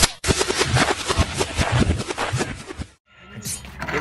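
Intro soundtrack: a dense, rapid run of sharp percussive hits that cuts off abruptly about three seconds in, followed by faint outdoor background noise.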